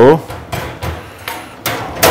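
Wire-mesh cage trap clinking and rattling a few times as it is handled, the sharpest knock near the end.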